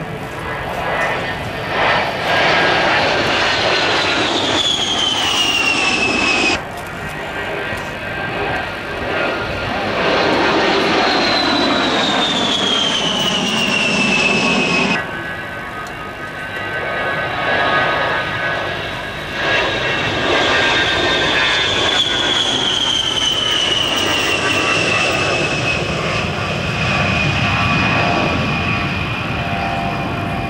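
Fairchild A-10 Thunderbolt II's twin TF34 turbofans whining as it flies low past, the high whine falling steadily in pitch over a rushing jet noise. The sound breaks off abruptly twice, so the falling whine is heard three times.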